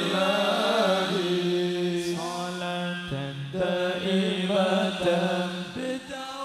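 Sholawat, an Islamic devotional song, sung as a slow, drawn-out chant with long melismatic lines over a held low note.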